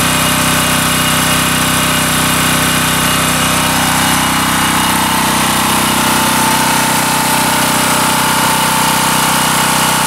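Portable gasoline generator's 196cc single-cylinder engine running steadily at a constant speed.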